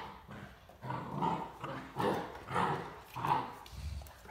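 Great Danes at rough play, giving a series of short play growls and barks, four or five in quick succession starting about a second in.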